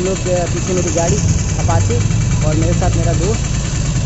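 Motorcycle engine idling, a steady low hum, under a man talking.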